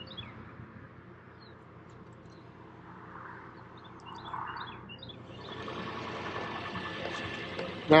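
Small birds chirping now and then over a quiet outdoor background. From about halfway through, the sound of a vehicle on the road swells up and grows louder as it approaches.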